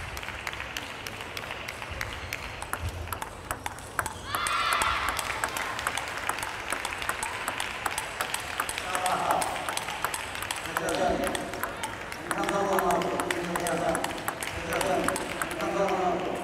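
Table tennis balls clicking off rackets and the table in quick, uneven series during a warm-up rally, with other balls in play around the hall. Voices talk in the background, loudest about four seconds in and through the second half.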